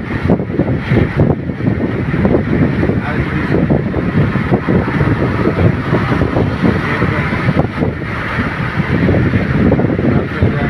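Road noise inside a car at highway speed: a steady rumble of tyres and wind, with gusts buffeting the microphone.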